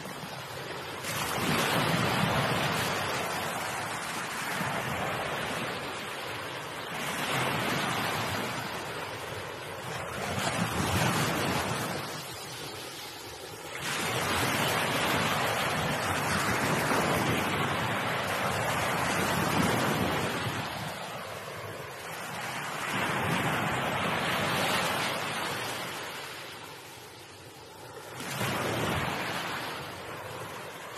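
Sea waves breaking and washing over rocks, the surf swelling to a loud rush and ebbing again every few seconds.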